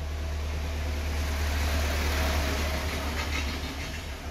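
A low rumbling noise with a hiss over it that swells over the first two seconds or so and then fades.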